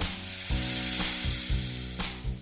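A snake's hiss, a long steady hiss over light background music.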